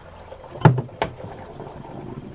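Dishwashing in a sink of soapy water: two knocks, about a third of a second apart, as a cooking pot is handled against the sink and dishes, over faint sloshing water.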